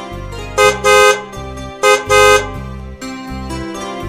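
A vehicle horn honking twice over background music, each time a brief toot followed at once by a longer blast.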